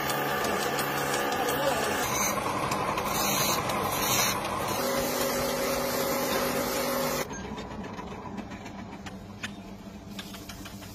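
Wood lathe running as it spins a wooden dhol shell that is being shaped, a steady machine noise. The sound changes abruptly several times and drops quieter about seven seconds in.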